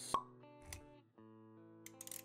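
Intro jingle: quiet held musical notes with a sharp pop sound effect just after the start, the loudest thing here, and a soft low thud shortly after.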